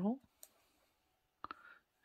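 5 mm ChiaoGoo metal circular knitting needles clicking faintly as stitches are worked: one light click about half a second in and a sharper pair about a second and a half in. The tail of the spoken word 'purl' is heard at the very start.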